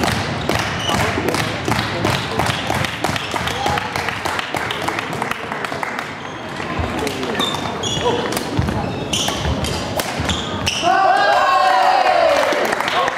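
Badminton rally sounds on a hardwood sports-hall floor: sharp racket strikes on shuttlecocks, quick footfalls and brief shoe squeaks, from this court and the neighbouring courts. These run over the steady chatter of players and spectators, and a voice calls out louder near the end.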